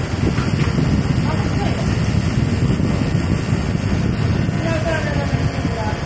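Steady rushing, rumbling air noise, as airflow buffets the microphone held close to a running split-type air conditioner indoor unit.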